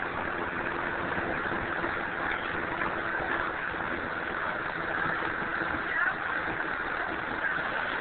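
A faint, off-microphone voice talking over a steady rush of background noise.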